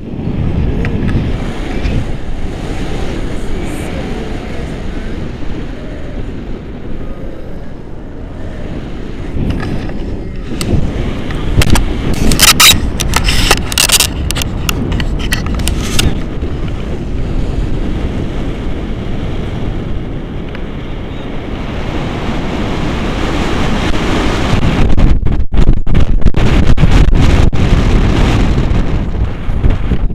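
Wind buffeting an action camera's microphone in paraglider flight: a loud, steady rumble. A cluster of sharp crackles comes about halfway through, and the rumble grows louder near the end.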